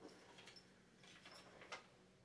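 Near silence with a few faint rustles and light ticks of paper ticket stubs being handled as a winning ticket is drawn by hand from a clear lottery drum.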